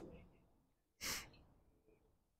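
A single short, breathy exhale, like a sigh, about a second in; otherwise near silence.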